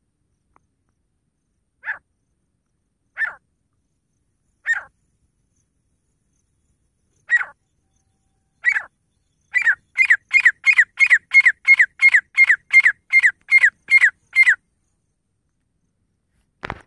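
Grey francolin calling: a few single short calls spaced a second or more apart, then a rapid run of about fourteen calls at two to three a second that stops before the end.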